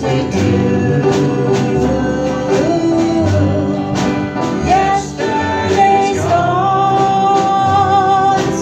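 Live country-gospel band playing with an upright bass, drum kit, keyboard and electric guitar while male and female voices sing; a long sung note is held near the end.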